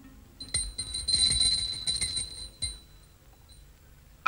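Small brass puja hand bell rung rapidly, a high, clear ringing that starts about half a second in and stops a little under three seconds in.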